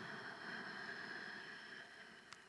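A long, soft breath drawn in through the throat, a steady hiss that fades away near the end.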